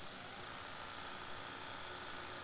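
Hyperice Hypervolt cordless massage gun running unloaded on its slowest speed: a steady, really quiet motor hum with a high-pitched whine.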